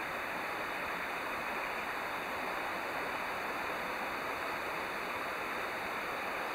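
Steady, even rushing noise with no separate sounds in it, at a constant level throughout.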